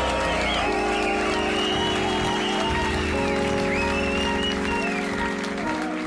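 Live band music: sustained keyboard chords that change about every two and a half seconds, under a gliding melodic lead line, with crowd applause.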